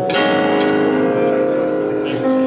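Electronic keyboard: a chord struck at the start and left ringing, its many notes holding steady and slowly fading.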